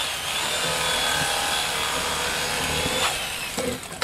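A small electric motor running steadily, typical of an electric fillet knife cutting a fish on a cleaning board.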